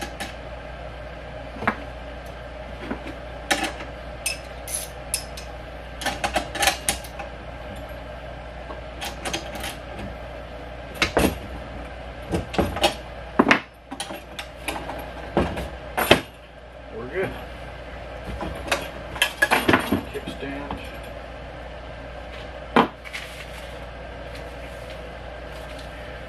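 Hand tools and metal axle hardware clinking and clicking while the rear axle bolt of an Earthway garden seeder is tightened: scattered sharp metallic clicks, some in quick clusters, over a steady background hum.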